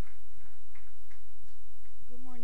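Light, irregular taps and clicks, roughly three a second, over a steady low room hum.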